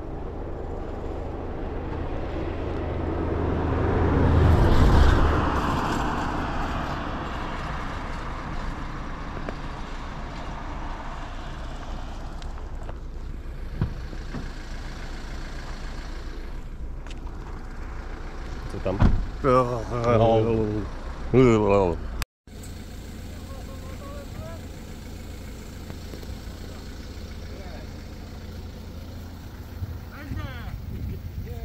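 A car passes close by, its noise swelling to a peak about five seconds in and then fading, over a steady low rumble. A voice calls out briefly past the middle. The sound then cuts to a quieter steady background.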